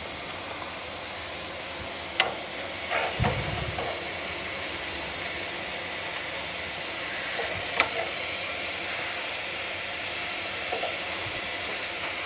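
Guar beans (cluster beans) sizzling with a steady hiss in a pot over a gas flame, while a steel spoon scrapes the pot to serve them. Two sharp clinks of the spoon, about two and eight seconds in.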